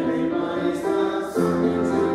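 Congregation singing a hymn with piano accompaniment, holding notes and moving to a new chord about halfway through.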